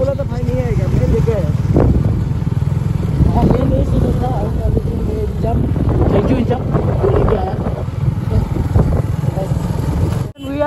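Motorcycle engine running as the bike rides along a rough dirt track, a steady low rumble throughout, with voices heard over it.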